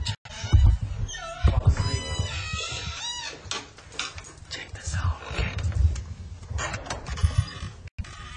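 Voices making wordless, pitch-sliding sounds over background music, with low bumps from a handheld camera being carried.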